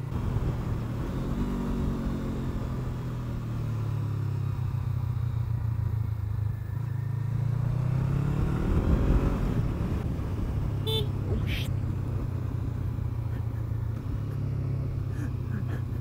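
Honda CBR500R parallel-twin engine under way with wind noise, revs falling as it eases off, then rising again as it pulls away. About eleven seconds in the bike's horn sounds briefly twice, pressed by mistake in place of the indicator-cancel switch.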